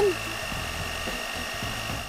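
Electric hand mixer running steadily with a high whine, its twin wire beaters whipping cream in a glass bowl.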